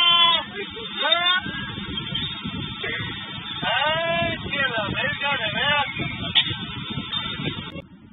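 A person's high-pitched, bleat-like vocal cries: one long held cry at the start, a rising one about a second in, then a run of short wavering cries around the middle, over background voices.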